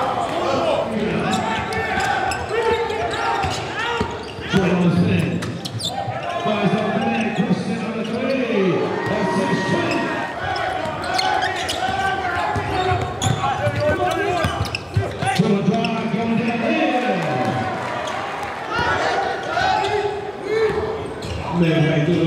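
Basketball game sound in an echoing gym: many voices of players and spectators talking and shouting over each other, with a basketball bouncing on the hardwood court now and then.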